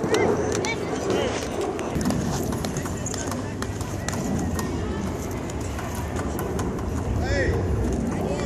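Indistinct voices of spectators and players calling out, over a steady outdoor background noise. Short calls come just after the start and again near the end, with scattered light clicks throughout.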